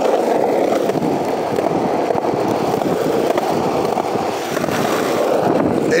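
Skateboard wheels rolling over street pavement: a steady rumble.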